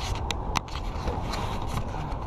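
Handling noise from a body-worn action camera: a few sharp clicks and scrapes in the first half second or so as it is moved and turned around, over a steady low rumble.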